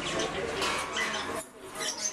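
Indistinct background voices mixed with short, high chirping calls, with a brief lull about one and a half seconds in.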